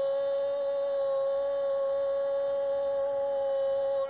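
A football TV commentator's goal cry: one long shout held on a single steady pitch without a break.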